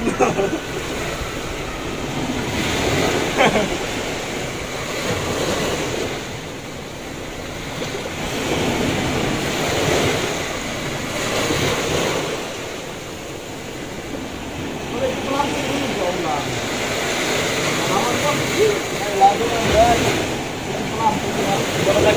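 Sea surf washing onto a sandy beach, the wash swelling and fading every several seconds, with some wind on the microphone.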